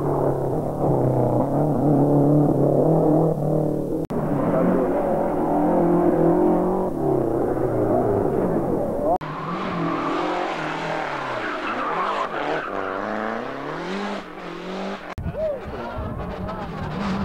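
Lancia Delta Integrale Group A rally cars' turbocharged four-cylinder engines revving hard and shifting gear as they pass at speed, in several separate passes broken by abrupt cuts.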